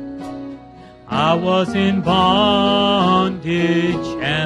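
Men singing a slow gospel song with instrumental accompaniment. The music dips quietly in the first second, then a loud sung phrase comes in about a second in and is held for over two seconds before easing off near the end.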